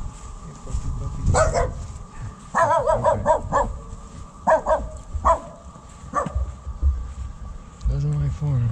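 A small dog barking in short, sharp barks: one about a second in, a quick run of barks around three seconds in, then a few more single barks.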